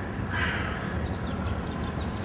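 A bird giving a harsh caw about half a second in, one of a series of caws roughly a second apart, over a steady low background rumble. Faint short chirps follow in the second half.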